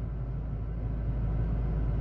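Steady low rumble with a faint hiss inside a car's cabin.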